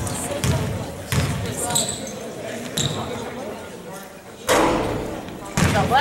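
Basketball bounced on a hardwood gym floor by a player dribbling at the free-throw line, several echoing bounces about a second apart, one louder knock near the end. Voices talk underneath.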